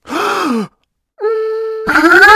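Cartoon-style voice sound effects: a short groan falling in pitch, then after a brief gap a steady held hum that swells into a louder, wavering vocal sound just before the end.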